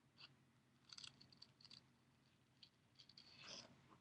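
Near silence with a few faint snips of scissors cutting a sheet of duct tape.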